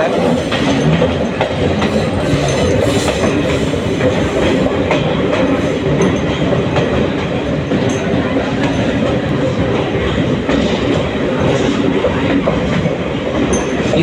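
Passenger train running through a railway tunnel: a loud, steady rumble of wheels on rails with clatter, heard from an open coach doorway.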